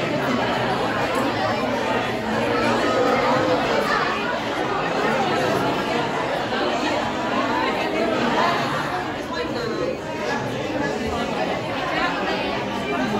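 Crowd chatter: many people talking at once, overlapping voices with no single speaker standing out, at a steady level.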